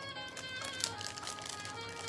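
Soft background music with steady held notes, under faint crinkling of a plastic bag and small clicks as metal jewelry is handled.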